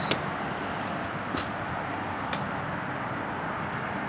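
Steady outdoor background noise, with two faint brief clicks near the middle.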